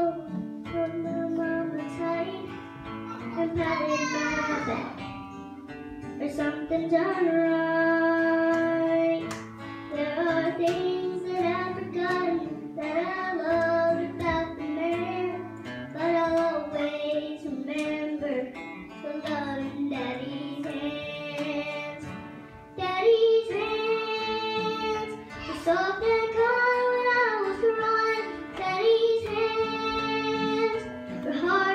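A young girl singing, accompanied by a strummed acoustic guitar.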